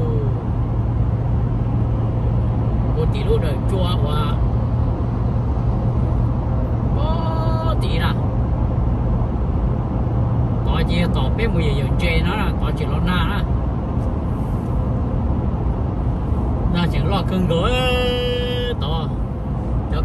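Steady road noise of a car driving at highway speed, heard from inside the cabin: an even low drone with tyre hiss.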